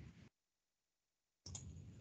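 Near silence: faint room tone from a webinar microphone, which drops out entirely for about a second in the middle.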